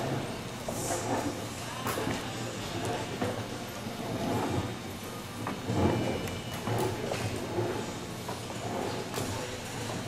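Soft hoofbeats of a reining horse moving on arena dirt, faint and irregular, under background music and a steady low hum of the arena.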